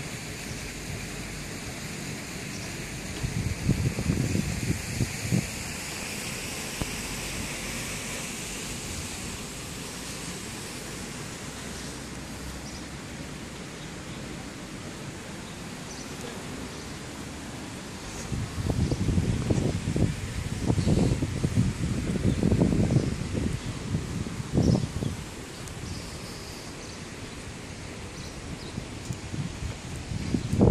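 Open-air street ambience with a steady hiss. Wind buffets the microphone in low, irregular rumbling gusts about four seconds in and again from about eighteen to twenty-five seconds in.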